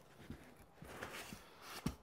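Faint rustling of cardboard and packing as a metal rail is lifted out of a shipping box, with a few light knocks, the sharpest just before the end.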